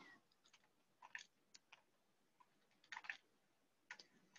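Near silence, broken by a few faint, brief clicks.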